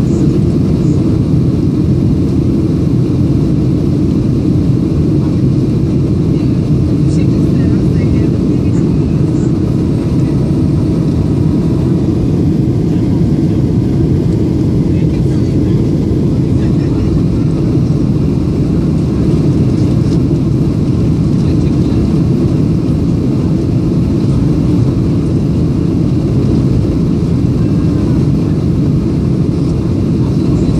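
Boeing 737 cabin noise in flight: jet engines and rushing airflow heard inside the passenger cabin as a steady low rumble with a hiss above it.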